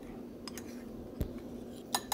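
Metal teaspoon stirring ground spices in a ceramic bowl: a few light clicks of the spoon against the bowl, the sharpest a little after a second in.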